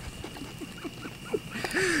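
A man's quiet, stifled laughter: a string of short chuckles.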